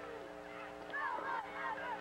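Shouts from players or the crowd at a high school football game, a few bending calls about a second in, over a steady hum in the broadcast audio.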